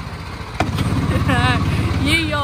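Engine of a vintage-style ride car running with a steady low putter, getting louder after a click about half a second in. A short voice is heard near the end.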